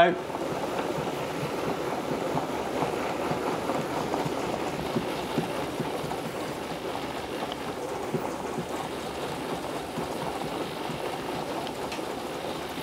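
Pianola pneumatic player stack running a piano roll while detached from the piano: a steady rush of air with a quick, rain-like patter of small clicks as the vacuum-driven bellows open and close in answer to the holes in the roll.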